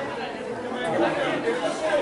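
Several people talking at once, overlapping chatter with no single voice standing out.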